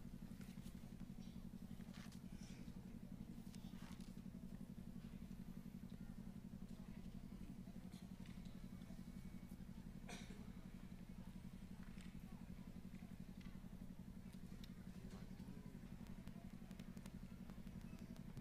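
A faint, steady low hum with a slight rapid pulse, dotted with a few faint ticks.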